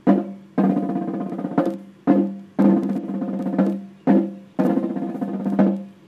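Military side drum beating a slow, steady cadence: a roll about a second long followed by two single strokes, repeated three times.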